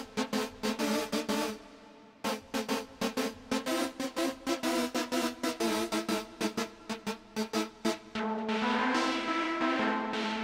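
Native Instruments Low End Modular software synthesizer playing a pitched, pulsing patch: a fast rhythmic stutter of notes that stops briefly about two seconds in, resumes, and near the end gives way to a held chord.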